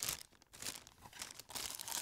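A small clear plastic bag crinkling in the hands as the cable inside it is handled: irregular crackles, with a brief lull about half a second in.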